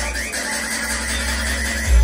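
Electronic dance music on a nightclub sound system at a breakdown: a high, wavering sound is held over a thinned-out low end, then the heavy bass and beat come back in near the end.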